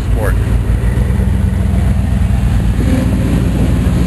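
Classic car engines running at low revs, a steady low engine note, as a 1968 Camaro Rally Sport convertible cruises slowly past.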